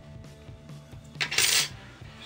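A small metal knife part clinks and rattles briefly on a hard surface about a second in: one sharp click and then a short bright jangle.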